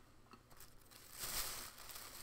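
Plastic snack wrapper crinkling as it is handled, in one short rustle about a second in.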